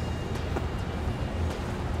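Steady low background hum with a couple of faint clicks.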